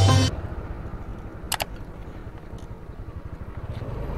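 Background music cuts off just after the start, leaving the motorcycle's engine running and road noise as it rides along at steady speed. A brief high chirp comes about one and a half seconds in.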